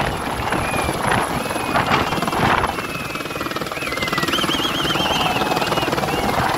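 Light helicopter climbing away just after lift-off, its main rotor beating steadily.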